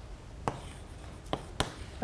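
Chalk writing on a blackboard: three short, sharp chalk taps, one about half a second in and two close together near the end.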